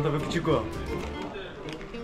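A man's voice calling out "hundred" over background music.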